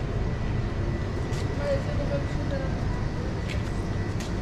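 Supermarket background noise: a steady low rumble with a faint steady high tone, a few soft clicks and faint voices in the middle.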